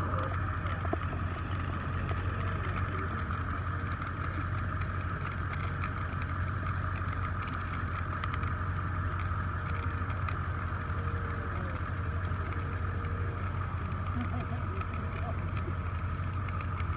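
Steady drone of an idling engine with a constant low hum, with faint crackling of burning understory vegetation.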